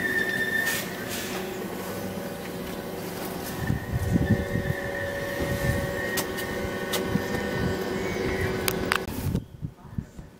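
London Overground Class 710 electric train pulling out of the platform close by, with a steady electric whine from its traction equipment over wheel rumble and the clicks of wheels on rail joints. The sound cuts off sharply about nine seconds in as the last coach clears.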